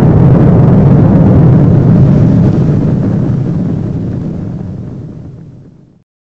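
Explosion sound effect: a loud, deep rumbling blast that stays at full strength for about the first two and a half seconds, then slowly dies away to nothing by the end.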